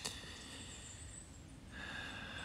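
A pause between a man's sentences: a short click and a breath at the start, then faint steady background hiss of outdoor ambience.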